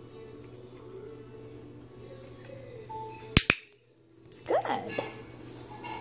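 A dog-training clicker clicking twice in quick succession, press and release, marking the puppy for going to the target. It is followed by a brief sound that slides up and down in pitch, over steady background music.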